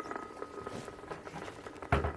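Popcorn-like crackling from an amplifier's speaker playing the spontaneous nerve firing (action potentials) picked up by pin electrodes in a severed cockroach leg, with a faint steady whine under it. A dull thump near the end.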